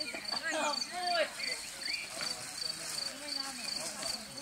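Background chatter of several young voices, with a short, high chirp repeating evenly about twice a second.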